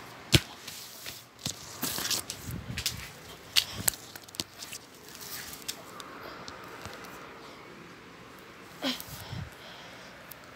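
Handling noise from a phone being carried and moved: a run of sharp clicks, knocks and rubbing in the first half, then quieter. Just before the end comes one short sound that falls in pitch.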